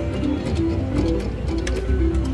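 Reel 'Em In! Catch the Big One 2 slot machine playing its spin music while the reels turn: a tune of short, repeated notes.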